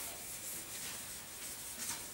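Blackboard duster wiped across a chalkboard, erasing chalk writing: dry rubbing strokes, the strongest near the end.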